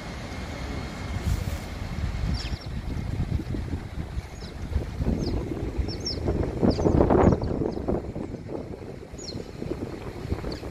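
Wind buffeting the microphone as a gusty low rumble, swelling to its loudest about seven seconds in, with short high bird chirps repeating throughout.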